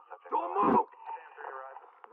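Police body-camera audio: a loud shout about half a second in, then more muffled voices, sounding thin as if over a radio, during a police dog's chase of a suspect.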